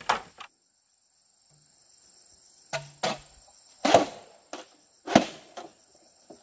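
Hollow bamboo poles knocking against each other and the ground as they are picked up and handled: six or seven separate knocks over a few seconds. A steady high insect buzz runs behind them.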